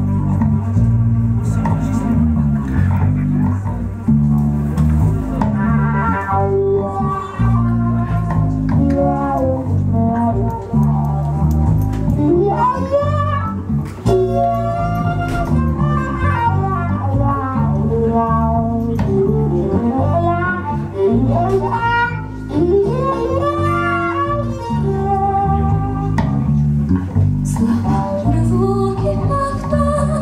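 Instrumental introduction for violin and bass guitar: a bass guitar line starts at once, and from about six seconds in a bowed violin plays the melody above it with vibrato and sliding notes.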